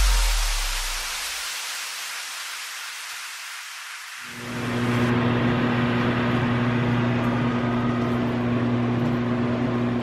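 Background music fades out, and about four seconds in a microwave oven starts running with a steady electrical hum and a low drone.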